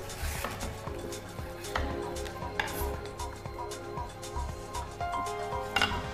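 Soft background music with a few knife strokes as a large chef's knife cuts a leek lengthways against a wooden chopping board.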